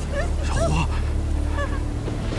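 A man's short, questioning calls of a name, several in quick succession, each rising and falling in pitch, over a steady low rumble.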